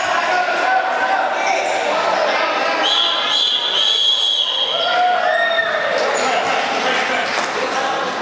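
Dodgeballs being thrown and bouncing on a hard floor in a large echoing hall, with players and onlookers shouting and calling over it throughout, several long calls among them.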